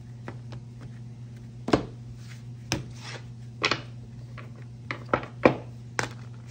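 A deck of tarot cards being shuffled by hand and knocked against a wooden tabletop: a string of sharp, short card slaps and taps, about six of them, the loudest near the end, over a low steady hum.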